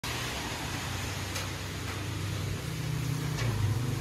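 Steady low mechanical hum under a constant hiss, with a couple of faint clicks and the hum growing slightly louder near the end.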